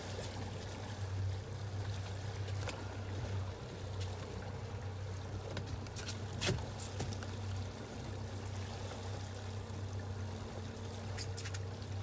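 Boat's outboard motor running steadily in gear with a low hum, under the wash of water along the hull. A few sharp clicks, about a third and halfway in.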